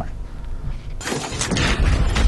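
TV channel ident transition sound effect: a low rumble, then about a second in a sudden rush of noise, like a crash or sweep, that carries on to the end.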